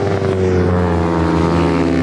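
Racing motorcycle's engine passing close at speed, its note gliding down in pitch as it goes by.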